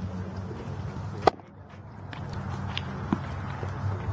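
A single sharp pop about a second in, typical of a pitched baseball smacking into a catcher's leather mitt, with a smaller click a couple of seconds later over a steady low outdoor rumble.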